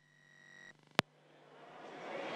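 Broadcast audio dropping out and switching back: a faint electrical buzz for under a second, a sharp click about a second in, then the chamber's room noise fading back up.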